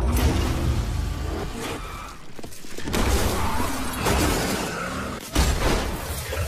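Loud crashing and shattering noise with sudden hits, easing off about two seconds in and coming back strongly, with one sharp impact near the end.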